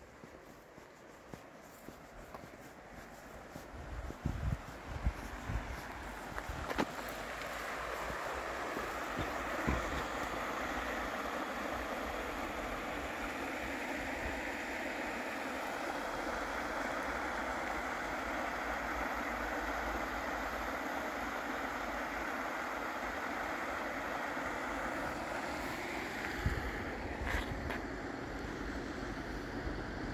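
Shallow mountain river running low over a wide stony bed: a steady rushing of water that swells in about seven seconds in and then holds. A few low thumps come before the rushing builds.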